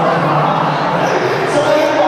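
Indistinct voices over a steady background hubbub.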